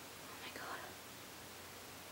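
A woman's brief, faint whisper about half a second in, over steady low room hiss.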